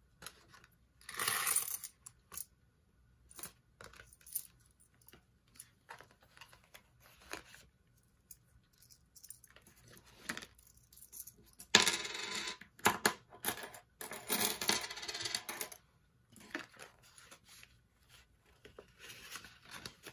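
Coins tipped out onto a hard tabletop, clinking and clattering, amid the rustle of paper cash envelopes and banknotes being handled. The sound comes in short, separate bursts with quiet gaps, the loudest a little past the middle.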